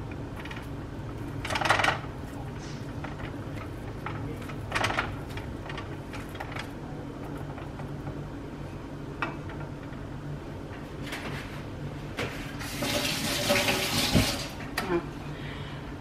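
A kitchen tap runs for about two seconds near the end. Earlier there are a few short scrapes of a wooden spatula against a skillet as raw sausage is broken up, all over a steady low hum.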